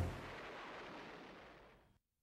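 An explosion: a sudden heavy blast right at the start, its rumble dying away over about two seconds until it fades out.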